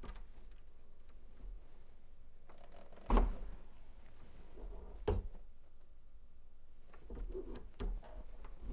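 Turret reloading press cycling a .257 Roberts brass case through the full-length sizing die: a sharp clunk about three seconds in, a second clunk about five seconds in, and small handling clicks around them.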